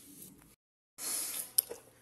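A brief dead silence where the recording cuts, then a soft hiss of handling noise and one sharp click about one and a half seconds in.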